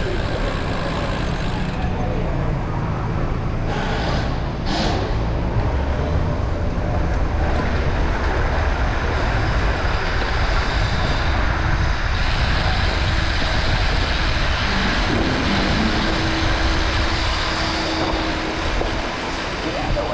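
Wind rushing over the microphone and road noise of a road bike rolling through city streets, its tyres rumbling over cobblestones partway through, with street traffic around it.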